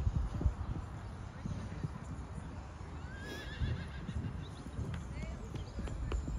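Hoofbeats of horses cantering on a sand arena, heard as irregular dull thuds, with a short wavering high call about halfway through.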